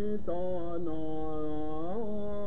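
Recording of a Turkish cantor's solo male voice singing a synagogue melody, played back over the hall's sound system. He holds long notes with slow bends in pitch, rising near the end.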